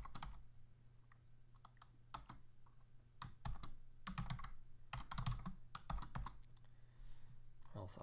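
Typing on a computer keyboard: keystroke clicks in short, irregular runs.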